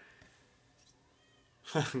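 A cat meowing faintly in the background, one short call that rises and falls about a second in; a man laughs near the end.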